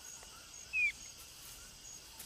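Forest ambience with a high insect chirp repeating about twice a second, and a single short, high, slightly falling squeak a little under a second in, the loudest sound.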